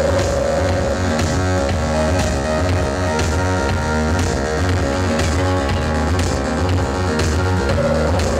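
Live electronic music played on synthesizers and a laptop: a dense, steady texture over a pulsing low bass line.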